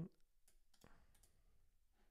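A few faint clicks of computer input over quiet room tone, about half a second and a second in.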